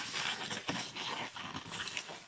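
Inflated latex modelling balloon rubbing and scraping against the hands as it is folded into a small loop and twisted.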